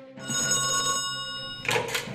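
Telephone bell ringing for just over a second, then stopping, followed by a short clatter that fits the handset being lifted.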